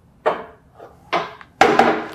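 Steel 45-degree leg press clanking as its locking handles are pushed and the weight sled is released: three metallic knocks, the last and loudest near the end with a short ring.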